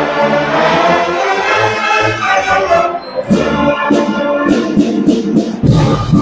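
Student marching band playing: brass instruments hold sustained chords over low bass notes. Sharp percussion strokes join about three seconds in, and the sound fills out near the end.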